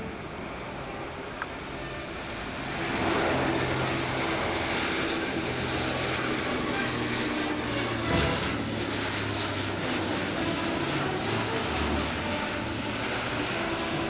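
Airbus A400M Atlas's four turboprop engines and propellers running at display power, a steady rush that swells about three seconds in, with a brief louder peak about eight seconds in as the aircraft passes side-on.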